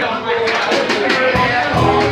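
Live band kicking into a song: drum kit strikes come in about half a second in and bass guitar notes join near the middle, over voices of people talking.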